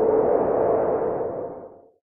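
Logo sting sound effect: a swelling, sonar-like whoosh with a steady low tone under it, fading away to nothing near the end.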